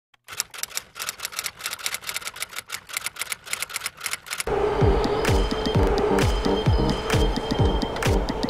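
A rapid run of typewriter clicks as an intro sound effect, then electronic music with a steady beat and deep kick drum that comes in about four and a half seconds in and is louder than the clicks.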